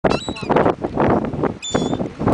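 Seagulls calling: two short, high calls, one near the start and one near the end, over a loud rushing noise.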